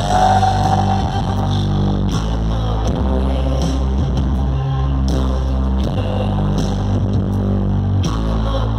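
Live rock band playing loud, heard from the audience: electric guitar over a heavy, booming low end with regular drum hits.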